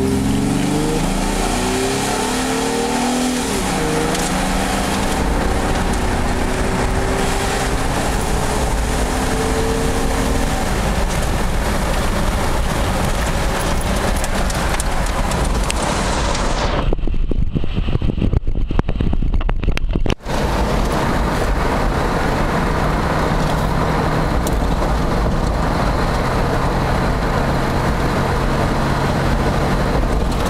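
Intake and engine sound of a 2001 Chevrolet Blazer's 4.3-litre V6, fitted with a Spectre aftermarket intake. It is revved, the note rising and falling over the first few seconds, then holds a steady loud drone. For a few seconds about two-thirds of the way in the sound goes muffled.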